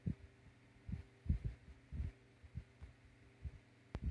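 Soft, irregular low thumps and lip pops of a man drawing on a cigar held at his lips, over a faint steady hum.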